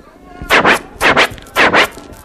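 Vinyl record scratching on a turntable: three quick back-and-forth scratch strokes about half a second apart, each sweeping down and back up in pitch.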